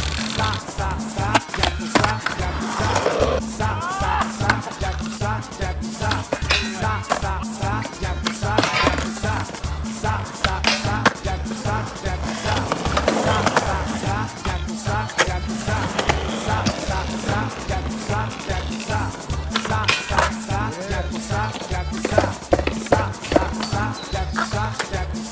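Skateboard wheels rolling on concrete, with the board clacking on pops and landings, over background music with a steady beat.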